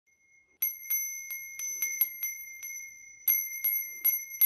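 Small brass bell ringing with a high, clear tone, its clapper striking repeatedly and unevenly, about three or four strikes a second, starting about half a second in, as the wreath it hangs from is shaken.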